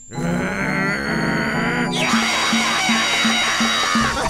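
Cartoon background music that starts abruptly, with an angry cartoon character's wavering vocal sounds in the first half. From about halfway, a hissing crash comes in over a low note repeating about three times a second.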